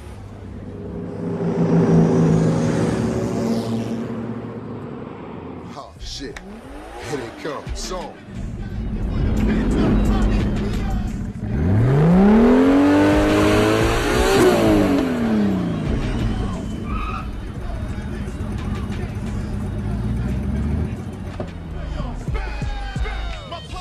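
Tuned sports-car engines revving as cars roll in. The loudest, from a red Mazda RX-7, climbs steeply in pitch a little past halfway through, holds briefly, then falls away.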